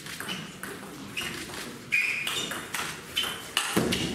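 Table tennis rally: a celluloid-type ball struck back and forth, with sharp pings of ball on rubber bats and on the tabletop several times in a few seconds. A louder, deeper thump comes near the end.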